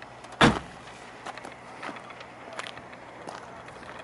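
Boot lid of an Audi A3 convertible shut with a single thud about half a second in, followed by a low background with a few light clicks.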